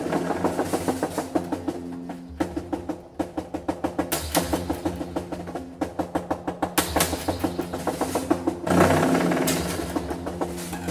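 Bass with a snare fitted to it, played in quick repeated plucked notes over ringing low pitches. The snare adds a rattling percussive edge and the hinged bridge adds a buzz. It echoes in a brick viaduct shaft and swells louder near the end.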